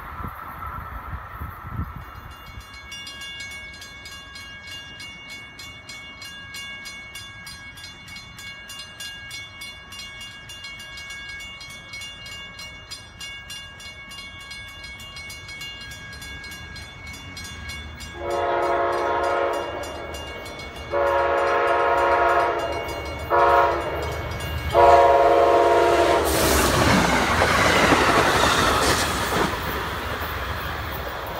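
A grade-crossing bell rings rapidly as an Amtrak Shuttle train approaches. About 18 seconds in, the train's horn sounds the crossing signal: two long blasts, a short one and a long one. The train then passes close by, led by its cab car with a P42 diesel at the rear.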